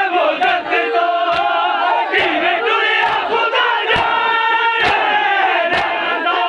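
A crowd of men chanting a mourning lament loudly in unison, punctuated by sharp chest-beating (matam) strikes about once a second.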